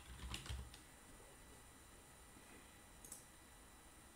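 A few faint computer keyboard keystrokes in the first second, then near silence broken by a single click about three seconds in.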